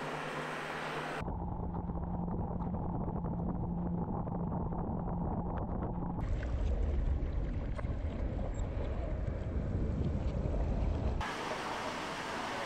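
Small inflatable boat's engine running steadily under way on the water, with heavy wind rumble on the microphone. The sound changes abruptly about a second in and again around six seconds in.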